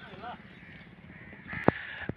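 Faint bird calls over farmyard background noise, with a single sharp click near the end.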